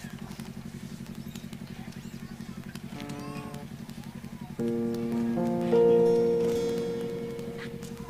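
A low, steady buzz from the sound system, then about four and a half seconds in amplified chords from the stage band's keyboard and guitar begin, held and slowly fading, with a louder note about a second later.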